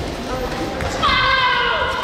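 A high-pitched shout, a karate kiai, starting about halfway through and held for about a second with slowly falling pitch, over hall chatter and low thuds of feet on the mats.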